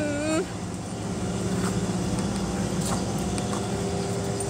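Steady low drone of a running vehicle engine, even in pitch and level, with a woman's voice briefly at the very start.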